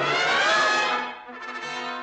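Orchestral film score led by brass (trombones and trumpets), swelling to a loud peak about half a second in with pitches bending up and back down, then dropping away after about a second.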